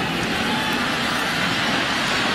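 Steady crowd noise from a large stadium crowd at a college football game, an even wash with no single cheer or call standing out.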